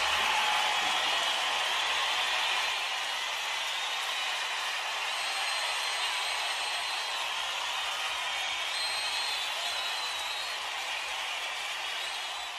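Audience applause and cheering at the end of a live song, a steady clapping noise with a couple of brief whistles in the middle, slowly tapering off.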